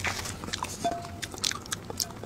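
Close-miked eating sounds: wet mouth clicks and smacks of chewing, coming as short separate ticks.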